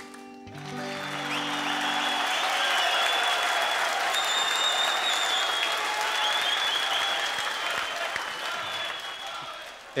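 Studio audience applauding at the end of a song, with the band's last held chord under the first two seconds. The applause dies away near the end.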